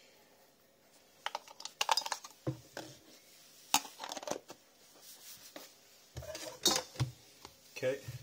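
AA batteries pressed into the plastic battery compartment of an automatic soap dispenser and its plastic cap fitted back on: an irregular run of small plastic clicks and taps.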